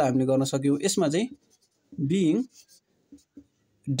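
Speech for the first half, then the faint scratching strokes of a marker pen writing on a whiteboard.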